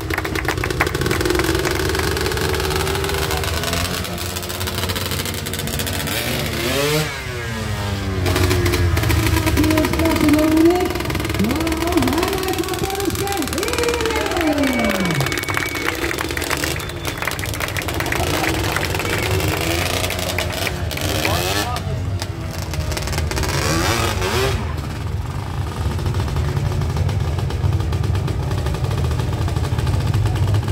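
A sport quad's engine running under a steady low rumble and revving up and down several times as it is ridden through stunts.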